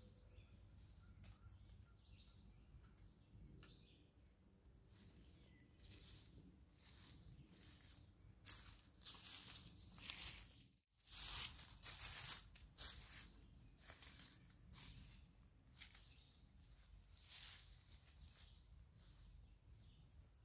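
Footsteps crunching through dry leaf litter, a string of short rustles that start about eight seconds in, grow loudest around the middle and carry on more lightly to the end. Faint birdsong can be heard beforehand.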